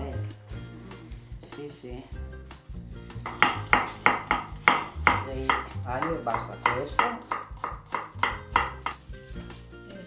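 Kitchen knife chopping fresh garlic cloves on a wooden cutting board: a steady run of sharp knocks, about three a second, starting about three seconds in.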